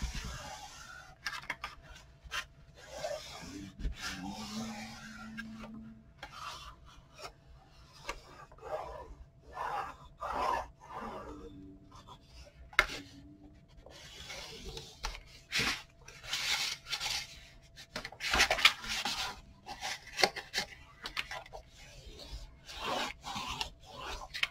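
Bone folder rubbing and scraping over glued cardstock in short, irregular back-and-forth strokes, pressing the paper into the folds of a book cover's spine so the glue spreads and no bubbles are left.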